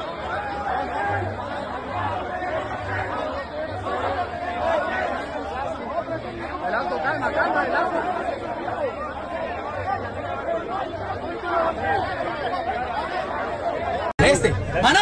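A crowd of men all talking at once, a constant babble of overlapping voices with no single speaker standing out.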